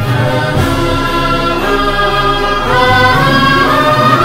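Film background score: a choir singing held notes over music, the melody stepping up and swelling slightly about three seconds in.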